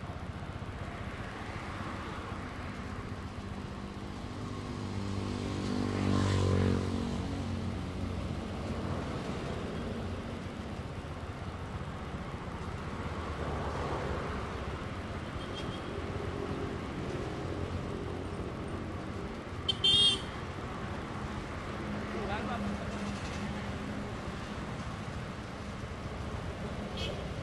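Busy street traffic with a steady background of engines. About six seconds in, a motor vehicle passes, its engine note swelling and fading. Around twenty seconds in comes a brief, loud horn toot.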